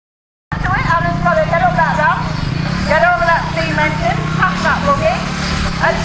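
Silent for about half a second, then a commentator's raised voice over a low, steady engine running underneath.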